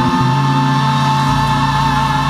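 Gospel praise team singing live with instrumental backing, holding one long sustained chord.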